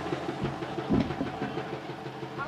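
Steady electrical hum from a stage PA system between lines, with a couple of soft low thumps about half a second and a second in.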